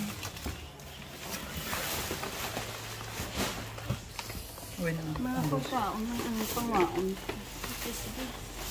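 Plastic wrapping and cardboard rustling and crinkling as hands rummage through goods packed in a cardboard box. Indistinct voices talk over the second half.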